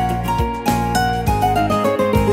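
Instrumental break of a Corsican song, with no singing: a melody played on an electronic keyboard over a plucked, guitar-like accompaniment.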